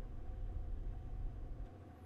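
Quiet room tone: a faint steady low hum and rumble, with no distinct sound events.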